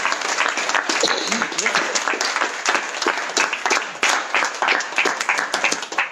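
Audience applauding: a dense, steady stream of hand claps from a room of listeners, with a voice or two mixed in.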